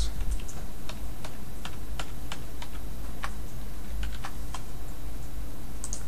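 Typing on a computer keyboard: irregular key clicks, a few a second, over a steady low hum.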